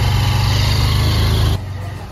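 Honda motorcycle engine running under throttle as the bike pulls away with two riders, cutting off suddenly about one and a half seconds in.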